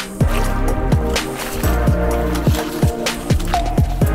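Background music with a steady electronic kick-drum beat.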